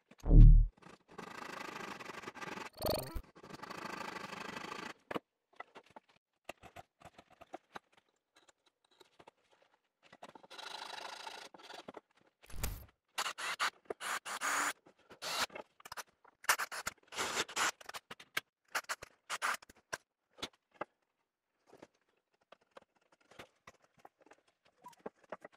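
Hand-tool work on a strip of pine at a workbench: stretches of scraping and rubbing, with many scattered clicks and taps of small tools. There are two dull knocks, one just after the start and one about halfway through.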